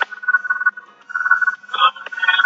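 A man's low, indistinct voice in two short stretches, thin and tinny, opening with a sharp click.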